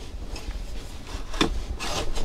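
Hard plastic rubbing and scraping as the rotating divider of a Hyundai Palisade's centre-console cup holder is turned by hand, with a sharp click about one and a half seconds in.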